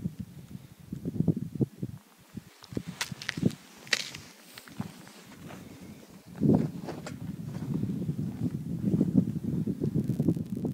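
Footsteps crunching on rocky ground, scattered at first with a few sharp clicks, then about six and a half seconds in becoming a steady, continuous crunching.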